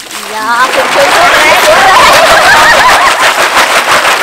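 Water from a hose splashing onto a basket of snails as hands stir and rinse them, rising to a loud, steady splash about a second in. Several voices chatter over it.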